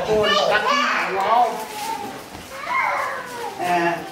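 Several people's voices talking and calling out, overlapping, some of them high-pitched.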